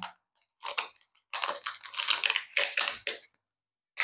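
Thin plastic skin crinkling and rustling as it is peeled off the body of a solar flip-flap flower toy, in a few short bursts with brief pauses between.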